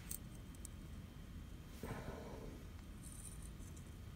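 Faint clicks and light scraping of small metal parts as the flint screw on the base of a Ronson Varaflame lighter is pressed, twisted and unscrewed. A few tiny clicks come in the first second.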